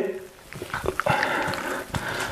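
Raw beef being squeezed and pulled through a slit by hand, giving faint wet handling sounds with a few small ticks, over a faint steady background sound.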